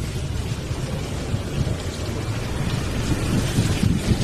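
Motorcycle engine running while riding through a rock cave: a low, uneven rumble with a wash of noise over it.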